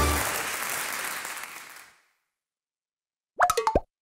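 Closing theme music fading out over about two seconds, then silence, then a short sound-logo sting of four or five quick popping notes near the end, lasting about half a second.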